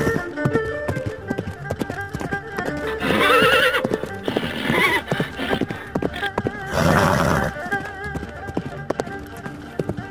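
Galloping horse hoofbeats, a rapid irregular clatter, with a wavering whinny about three seconds in and a loud breathy blow near seven seconds, over background music with sustained notes.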